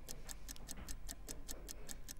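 Countdown-clock ticking sound effect: rapid, even, light high-pitched ticks, several a second, marking the last seconds of a timed sale.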